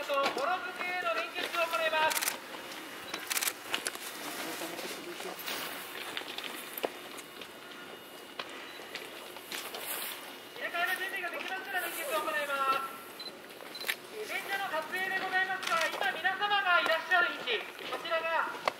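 A person talking in stretches, with pauses between, and a few sharp clicks in the quieter middle stretch.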